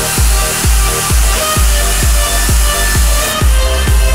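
Electronic dance music from a live DJ set: a steady four-on-the-floor kick drum, about two beats a second, over bass and sustained synth chords.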